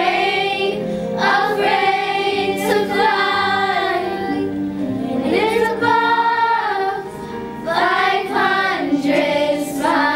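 A group of young girls singing a pop song in unison over a recorded backing track, with a brief dip about seven seconds in.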